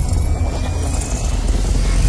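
Cinematic logo-intro sound effect: a deep, steady rumble under a noisy hiss.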